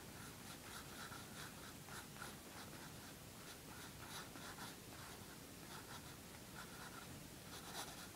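Pencil scratching on paper in many short, quick strokes, faint, as a small eye is drawn and filled in.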